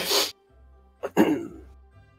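A few spoken words over faint background music, with a short breathy burst at the start.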